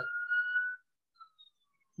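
A single thin whistle-like tone gliding slowly upward in pitch, cutting off a little under a second in, then near silence.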